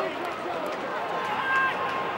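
Stadium crowd noise with indistinct voices calling out at a rugby match, a steady murmur without any clear impacts.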